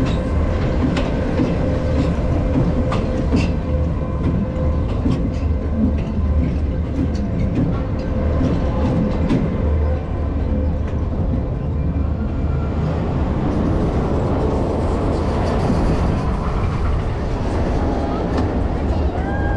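Zamperla Air Force 5 suspended coaster train running along its overhead steel track: a steady loud rumble of wheels on rail, with scattered sharp clicks and clatters through the first half.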